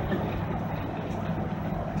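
Steady low drone of engine and road noise inside the cab of a Class A motorhome cruising at highway speed.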